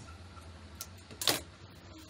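Fabric handled by hand: a small click a little under a second in, then a short, sharp rustle about a second and a quarter in.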